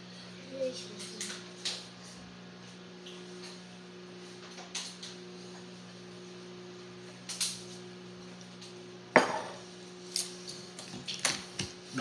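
Utensils and dishes clinking during a meal: scattered light clicks and knocks, the sharpest about nine seconds in, over a steady low hum.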